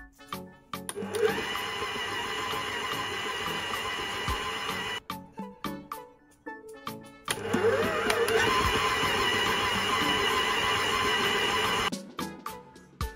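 Stand mixer motor running with its dough hook kneading a stiff bulgur-and-mince dough, in two steady runs of about four seconds with a short stop between them. Each run starts with a rising whine as the motor speeds up.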